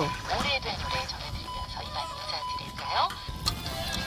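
A small handheld radio being tuned across the dial: static with warbling whistles and brief snatches of broadcast voices and music as it passes between stations.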